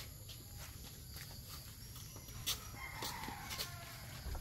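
A rooster crowing once, faintly, about three seconds in, over scattered light knocks and rustles from items being handled in a car's cargo area.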